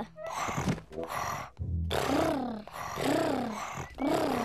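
Several cartoon children's voices imitating tigers purring: a string of rough, rolling purrs, each under a second long, one after another.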